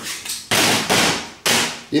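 A few sharp knocks, the two loudest about a second apart, each fading out over about half a second.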